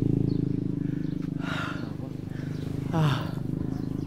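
Men panting hard, out of breath from running, with heavy breaths about a second and a half and three seconds in, the second ending in a short falling grunt. A steady low hum runs underneath.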